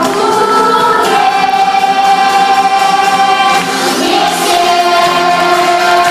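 Children's choir singing a pop song with accompaniment, holding long notes: one from about a second in, then a brief break and another long held note from about four seconds in.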